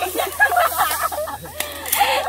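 People's voices giving short wordless exclamations and calls, pitched and wavering, while they strain together on a pole.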